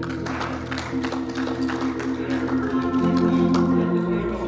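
Organ playing sustained chords, the chord changing about three seconds in, with many sharp percussive hits running through it.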